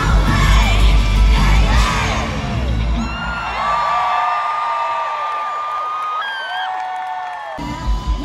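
Live pop-punk band with a female lead singer, heard loud from the crowd. About three seconds in the drums and bass drop out, leaving long held high notes over crowd whoops and cheering, and the full band comes back in just before the end.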